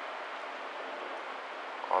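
Steady, even hiss of outdoor background noise with nothing distinct in it; a man's voice starts again right at the end.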